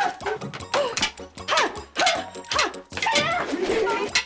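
Short high yelps, about four of them, each falling steeply in pitch, with sharp thuds between them.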